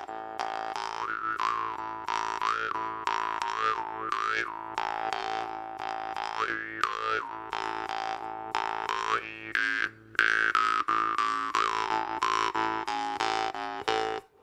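Jaw harp played in a slow groove: a steady low drone plucked in a repeating rhythm, with the mouth shaping a bright overtone melody that glides up and down. The playing breaks off for a moment about ten seconds in, then picks up again.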